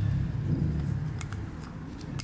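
A few faint, light metallic clicks and rustles as a steel piston is turned in the hands, with its oil ring shifting freely in the groove. A low steady hum fades out about halfway through.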